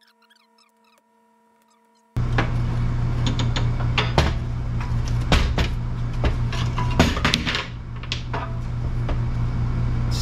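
Near silence for about two seconds, then a sudden cut-in to a steady low hum. Over it come scattered knocks and clinks of a rusty Fiat X1/9 rear suspension arm, hub knuckle and tie rod being handled and set down on a steel workbench.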